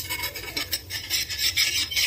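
Metal spatula scraping across a dosa tawa under the dosa to loosen it, an uneven run of rasping strokes that grows louder about a second in.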